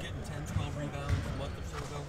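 Basketballs bouncing on a gym floor, a few separate thuds, with indistinct voices in the background.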